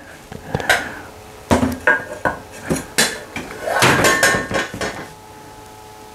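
Several irregular metallic clanks and clinks, with a longer scraping rattle about four seconds in, as a two-stroke expansion-chamber exhaust pipe is handled against the engine's exhaust flange.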